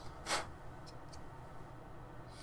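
Hobby-knife blade scraping the bottom edge of a 3D-printed plastic whistle: one short scrape about a third of a second in, then two faint scratches, cleaning off the squashed first layer.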